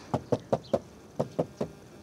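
A hand knocking on the plastic inner trim panel of a Daihatsu Ayla's rear door, two quick runs of short knocks, four then three. The panel is backed by glasswool sound-deadening and the knocks test how well it damps; it sounds fairly muted.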